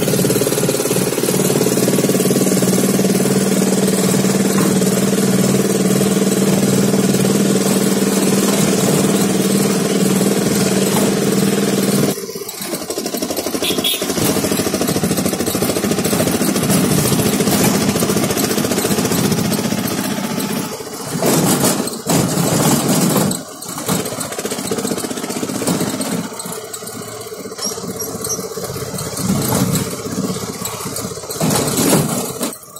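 Road vehicle engine heard from on board while driving, with a steady hum and a wash of wind and road noise. About twelve seconds in, the engine note suddenly drops and the sound turns uneven, with brief loud surges later on.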